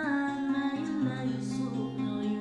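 A woman singing while playing an acoustic guitar.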